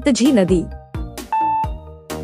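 Quiz countdown timer beep: a single short, steady high electronic tone about a second and a half in, over light background music. It marks the start of the answer countdown.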